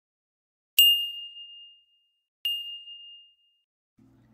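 Two high, clear bell-like dings about a second and a half apart, the first louder, each ringing out and fading within about a second.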